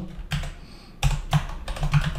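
Computer keyboard typing: an irregular run of separate keystrokes, a few a second.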